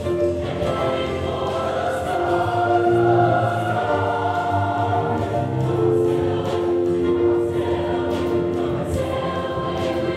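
Large mixed choir singing, holding long sustained chords.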